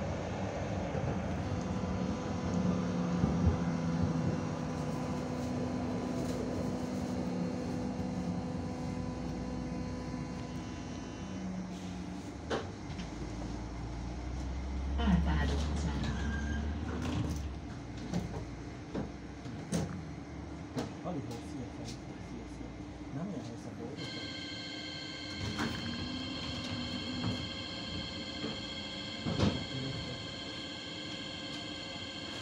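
Cabin sound of a Hannover TW 6000 tram running on its line: a steady rumble of wheels on rail with an underlying motor hum. A steady high-pitched whine of several tones sets in about three-quarters of the way through, and passengers' voices are heard around the middle.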